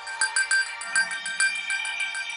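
Programme intro jingle music: a quick run of short, high, repeating notes, several a second, over steady held tones.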